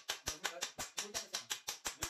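Ratchet wrench clicking in a rapid, even run of about six clicks a second while a part is tightened at a bicycle frame's bottom bracket.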